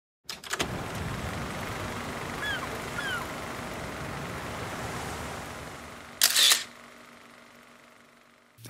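Logo sound effect: a few clicks at the start, a steady background wash with two short falling chirps, then one sharp camera shutter release about six seconds in, the loudest sound, after which the sound fades away.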